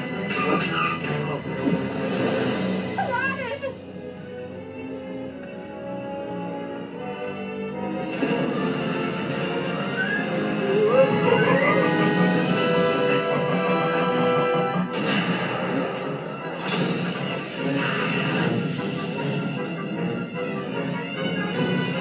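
Orchestral film score from an animated battle scene, mixed with crash effects and short cries and laughter from the characters, played through a television. The music drops quieter about four seconds in and swells again from about eight seconds.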